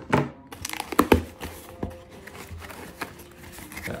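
Small cardboard shipping box being opened by hand, its taped flaps pulled apart with crackling and rustling of cardboard. The sharpest crackles come about a second in, then quieter scattered clicks.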